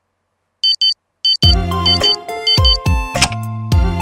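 Digital alarm clock beeping in short quick pairs of high electronic tones. About a second and a half in, a cartoon song's backing music with a bass beat comes in and the beeps carry on over it.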